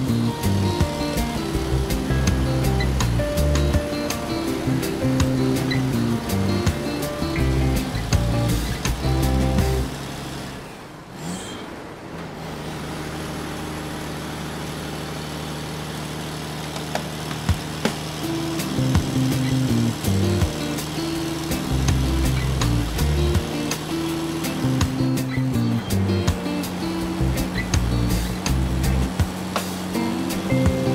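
Background music with a beat and a stepping melody; about ten seconds in it dips briefly with a sweeping sound, then a held tone carries on for several seconds before the beat and melody return.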